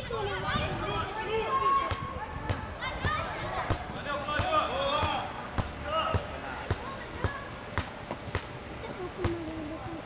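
Football match sounds: voices of players and spectators calling out across the pitch, mixed with repeated irregular thuds of the ball being kicked and bouncing on artificial turf.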